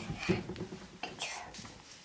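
Quiet whispered speech in a small room: a few soft, hissy murmured words.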